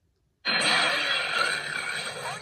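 An animated TV promo's soundtrack playing from a tablet's speaker, starting abruptly about half a second in with a loud, dense rush of sound.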